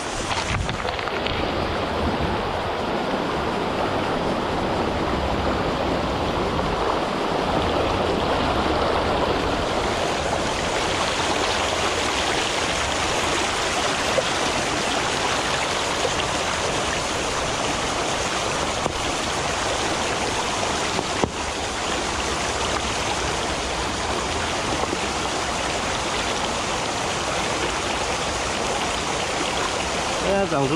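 Shallow rocky stream running fast over stones: a steady rush of water. There are a couple of brief knocks partway through.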